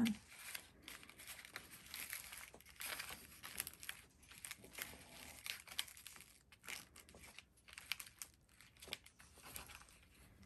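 Faint, irregular crinkling and rustling of a star-print ribbon bow as it is handled and pressed down onto a plaque, with small crackles throughout.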